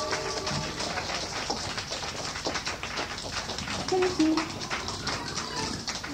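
Scattered audience clapping as the music stops, thinning out over the few seconds, with a brief voice from the crowd about four seconds in.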